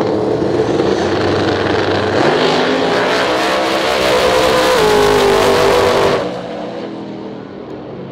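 Two no-prep drag cars' engines held on the line, then launching together at full throttle about two seconds in and pulling hard down the strip, the pitch stepping through the run. The sound drops away sharply about six seconds in, leaving the engines fainter and farther off.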